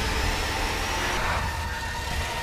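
A steady low rumble under a noisy hiss, with faint held high tones over it.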